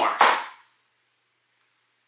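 One sharp snap of a small cardboard product box being opened, dying away within half a second, followed by dead silence.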